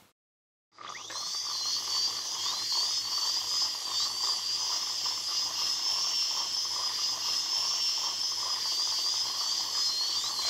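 High-pitched dental drill starting about a second in and then whining steadily, its pitch wavering slightly, as it drills out a cavity in a decayed molar.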